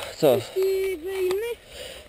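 A man's voice: a short spoken word, then a hummed tone about a second long that dips in pitch midway.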